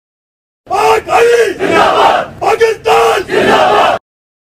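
A group of uniformed men shouting a slogan in unison, about six loud shouts in quick succession starting just under a second in.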